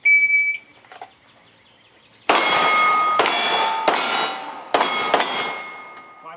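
Shot-timer start beep, then about two seconds later five 9mm pistol shots from a Glock 17 Gen4 in quick succession, each followed by the ringing of steel targets being hit.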